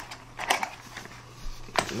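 Cardboard and paper packaging being handled as the inner tray of a camera box is pulled out: two short rustling scrapes, one about half a second in and one near the end, over a faint steady hum.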